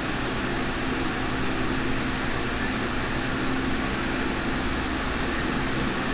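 A steady whir and hiss of a running cooling fan, with a low hum held on one tone throughout.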